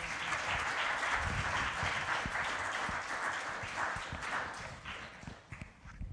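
Congregation applauding, starting at once and dying away over the last second or so.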